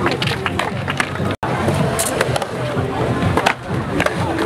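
Skateboards rolling and clacking on the concrete bowls of a skatepark, with sharp knocks of boards hitting the surface, over crowd chatter and music. All sound cuts out for an instant about a second and a half in.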